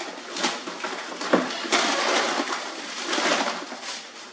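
Plastic-bagged frozen packages rustling and crinkling as they are handled and pulled from a freezer, with one sharp knock about a second and a half in.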